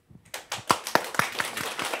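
A small group of people clapping. It starts about a third of a second in with a few separate claps and quickly thickens into steady applause.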